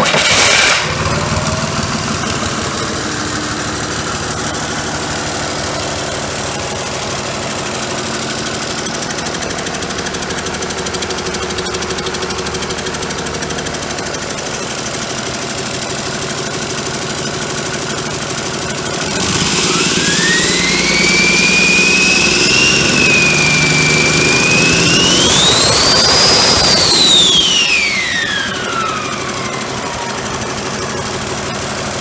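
Cummins ISB 5.9L inline-six turbo diesel just catching from the starter, settling to a steady idle. After about 19 s it is revved up and held, then revved higher, with a turbocharger whine rising with the revs and falling away as it drops back toward idle near the end.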